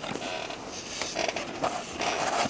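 Irregular creaking and rubbing, with a few short sharp clicks.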